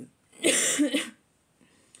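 A woman coughing briefly, about half a second in.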